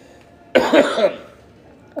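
A person coughing once, a short sudden burst about half a second in.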